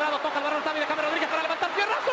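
A male football commentator speaking in Spanish over steady stadium crowd noise.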